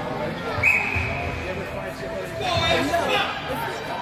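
Spectators talking in an ice rink during a stoppage in play, with a louder burst of voices about two and a half seconds in. A steady high tone starts about half a second in and is held for about a second and a half.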